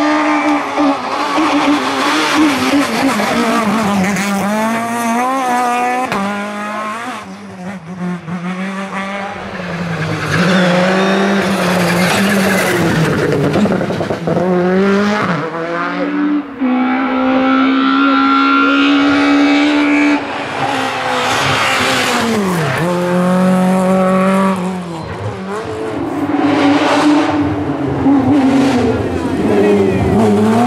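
A succession of rally cars driven flat out on a tarmac stage, their engines revving hard and rising and falling in pitch through gear changes and lifts off the throttle.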